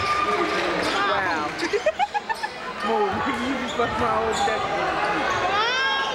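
Basketball game in a gym: voices from the crowd under sneakers squeaking on the hardwood court, with a quick run of squeaks about two seconds in, and the ball bouncing.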